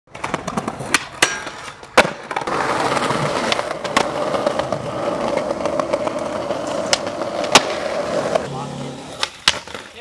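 Skateboard sounds: sharp clacks of the board, then skateboard trucks grinding steadily along a stone ledge for about six seconds, with a few more clacks near the end.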